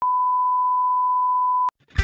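Steady test-tone beep of the kind that goes with TV colour bars: one unbroken pure tone held for about a second and a half, then cut off with a click.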